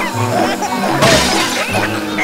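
Glass shattering: a short, sharp cartoon window-breaking crash about a second in, over background music and children's voices.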